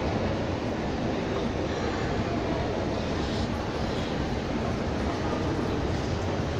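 Escalator running, heard while riding it: a steady mechanical rumble with the rattle of the moving steps.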